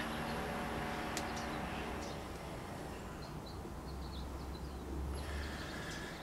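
Faint sound of bare hands pressing and smoothing soft, damp clay, over a low steady background hum.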